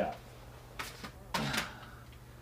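A plastic CD jewel case being picked up and handled: two short scraping clacks about half a second apart, over a steady low hum.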